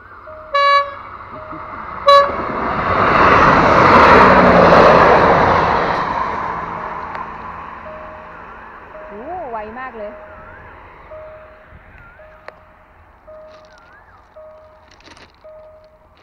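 A train sounds two short horn blasts, about half a second and two seconds in, then rushes past close by, loudest three to six seconds in and fading after. As the noise dies away, a level-crossing warning signal keeps beeping in a steady repeating pattern.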